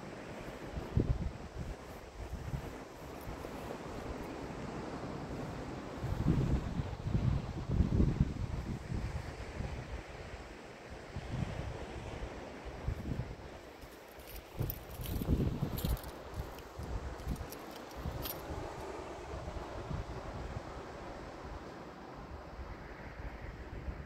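Wind buffeting the microphone in irregular low gusts, strongest about six to eight seconds in and again around fifteen seconds, over a steady outdoor hiss.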